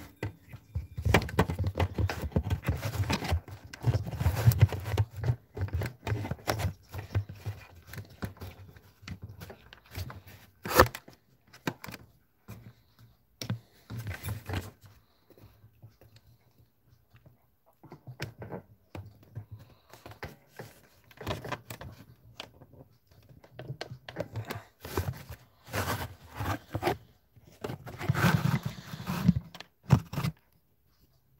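Handling noise from a phone being repositioned in its clamp: irregular rubbing, scraping and bumps right on the microphone, with a low rumble and a sharp knock about eleven seconds in.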